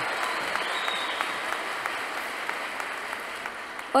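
A large audience applauding. The clapping slowly dies down.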